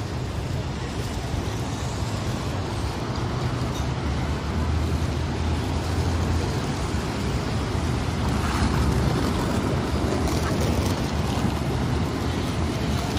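Steady traffic noise of a busy city street, a low rumble of cars and taxis that grows a little louder about halfway through.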